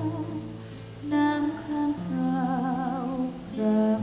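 A woman singing a slow song to acoustic guitar accompaniment, holding long notes with a wavering vibrato about two to three seconds in.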